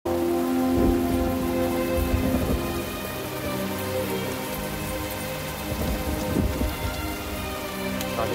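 Steady rain with several low rolls of thunder, about a second in, again after two seconds and near the end, under a film score's held notes.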